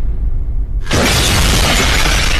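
A title-intro shatter sound effect. A deep bass rumble runs throughout, and about a second in a sudden loud crash of shattering noise breaks in and carries on.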